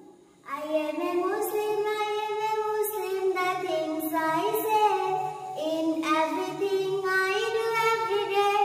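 A young girl singing a poem solo in a high child's voice, holding long notes and sliding between them; she comes in about half a second in after a brief pause.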